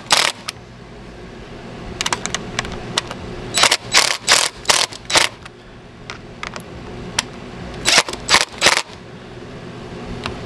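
DeWalt cordless impact driver hammering screws tight into the flange of a brass garboard drain plug on a fiberglass boat hull. It runs in short bursts: one at the very start, a cluster of about four around four to five seconds in, and about three more near eight seconds.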